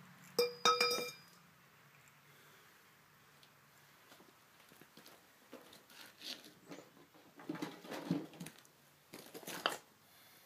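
A metal pipe clanks twice with a short metallic ring, about half a second and one second in, as it is lifted off the axle shaft. Scattered softer knocks and scuffs follow in the second half.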